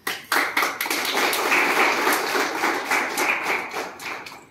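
A small group of people clapping their hands as the portrait is garlanded. The clapping starts suddenly, as a dense run of quick claps, and stops soon after four seconds.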